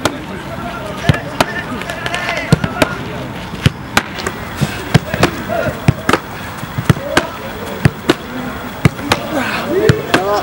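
Footballs being kicked and hitting goalkeeper gloves: a run of sharp, irregular thuds, about two a second.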